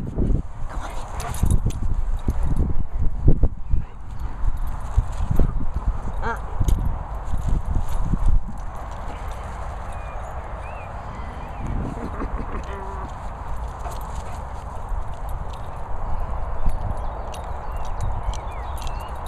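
Dogs moving about on grass: irregular low thumps and rustles, busiest in the first eight seconds, then a steadier outdoor noise with a few faint chirps.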